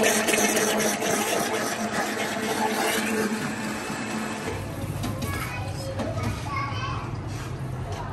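Electric blender motor running steadily, cutting off about four and a half seconds in, after which background voices and a low hum remain.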